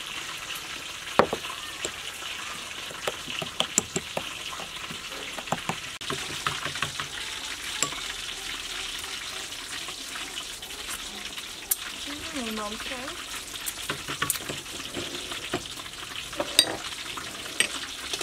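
A metal spoon stirring chili sauce and lime juice in a small glass bowl. Scattered light clicks of spoon on glass and bowls sit over a steady hiss.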